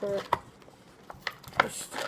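Handling noise: a few light, sharp clicks and taps spread over two seconds, with a brief faint hiss near the end.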